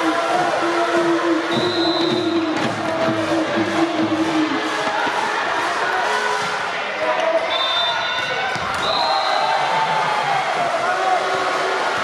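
Volleyball rally in a large gymnasium: a crowd of spectators cheering and calling out together over sharp thuds of the ball being struck and hitting the floor, with short high whistle blasts twice.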